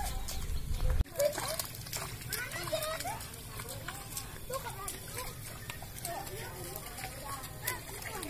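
Children's voices chattering and calling at a distance, with faint squelching steps through wet paddy mud. A low rumble underneath cuts off abruptly about a second in.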